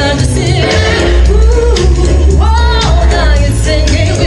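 A woman singing into a microphone over a loud backing track with a heavy bass beat, her voice sliding into long held notes with vibrato.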